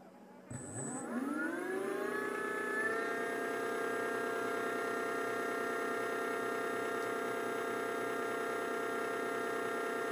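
Brushless outrunner motor driven by a cheap ESC spinning up: a faint high whistle starts about half a second in, then a whine rises in pitch for about two seconds and levels off into a steady electric whine as the motor runs at constant speed.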